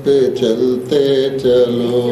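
Slow, chant-like devotional singing of a Hindi song, a low voice holding long notes that step up and down in pitch.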